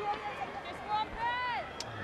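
Cricket-ground crowd murmur, with one high call from a voice about a second and a half in that falls in pitch.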